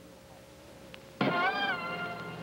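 A faint hum with a thin steady tone, then about a second in a loud, long pitched note, rich in overtones, that bends up and settles back: the opening of a television commercial's soundtrack.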